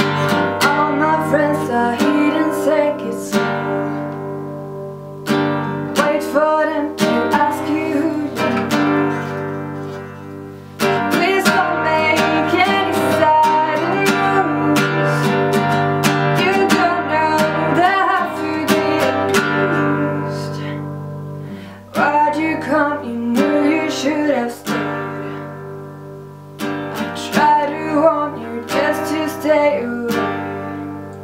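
Acoustic guitar strummed in chords, with a woman's voice singing over it. Several times the strumming stops and a chord rings out and fades before the strumming starts again.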